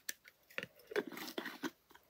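Soft, irregular crunching and crinkling of dry moss and fibre stuffing as the top of a glass jar is handled, with a few small clicks.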